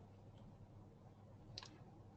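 Near silence with a low room hum, broken by one faint short click about three-quarters of the way through.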